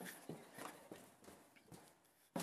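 Faint footsteps, about three steps a second, growing fainter as the walker moves away.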